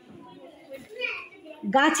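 Children's voices murmuring faintly in a small classroom during a pause, then a voice starts speaking again near the end.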